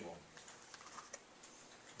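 Very quiet room tone in a pause between sentences, with a few faint scattered clicks.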